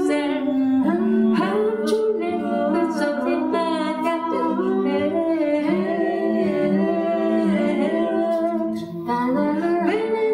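An unaccompanied a cappella vocal group singing in harmony, several voices holding and moving through chords together.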